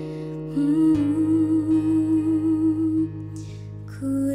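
Slow acoustic guitar ballad, with a woman humming a wordless melody over the guitar chords. Her held note wavers and ends about three seconds in.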